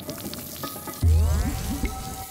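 Sound design for a food visualization: crackling, sizzling noises, then about a second in a sudden deep low rumble with gurgling pitch sweeps, styled as a rumbling stomach.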